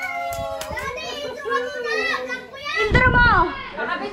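Several excited voices, children's among them, talking and exclaiming over one another, with a louder outburst about three seconds in.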